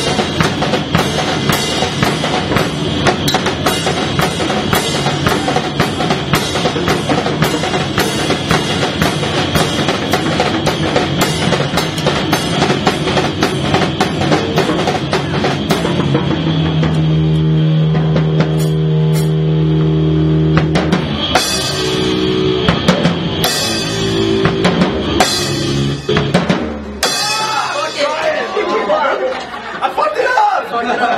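Punk band playing live: fast, dense drumming on a full kit with cymbals under loud band music, which breaks into long held notes about halfway through, then a few scattered hits before the song ends shortly before the close.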